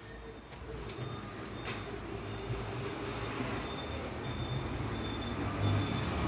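Steady low background rumble with hiss, slowly growing a little louder, with a faint high tone that comes and goes and a couple of faint clicks early on.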